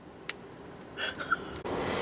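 Quiet car-cabin background with a soft click, then a man's breathy, stifled chuckle building near the end.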